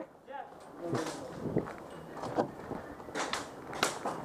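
Footsteps crunching on gravel, with a few irregular sharp clicks; the last two, near the end, are the loudest.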